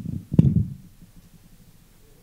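Handheld microphone being set into its desk stand: a low handling rumble and one sharp knock about half a second in, then quiet room tone.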